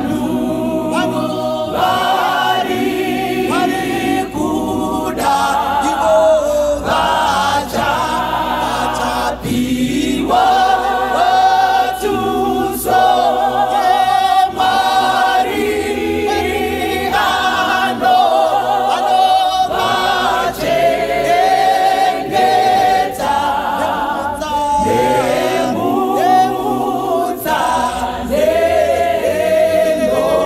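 Mixed church choir singing a cappella, a woman's lead voice carried over the group's harmony.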